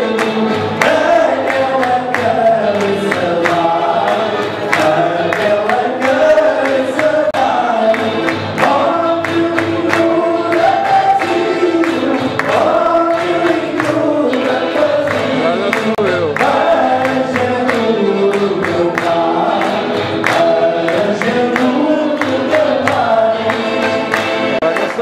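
Several men singing a Portuguese popular song together to guitar accompaniment, with hands clapping along in a steady beat.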